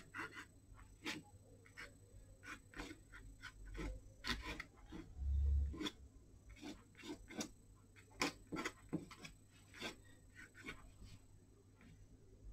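Paintbrush dabbing and scrubbing on fine-grained watercolour paper in short, irregular strokes, with a low thump about five and a half seconds in.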